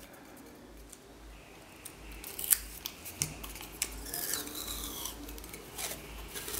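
Adhesive tape being pulled off its roll and pressed onto a cylinder: short rasping peels mixed with light clicks of handling, starting about two seconds in.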